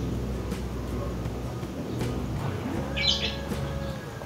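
A low, steady background hum with a short bird chirp about three seconds in.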